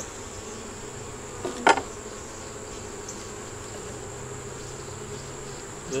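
Honeybees humming steadily from an open hive, with one sharp knock about a second and a half in as hive frames are worked.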